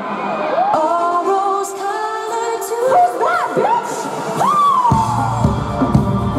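A rock band live on stage restarting a song: singing and whoops over a held backing at first, then the full band, drums and bass, comes in about five seconds in.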